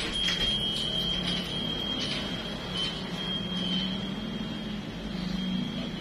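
Steady background hum with a constant high-pitched whine running underneath.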